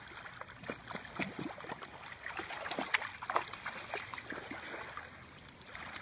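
Miniature dachshund paddling and splashing through shallow lake water while towing a long stick in its mouth: a run of light, irregular splashes.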